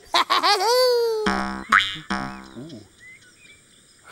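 A short laugh, then a springy cartoon "boing" sound effect with a quick rising twang about a second and a half in, dying away over about a second.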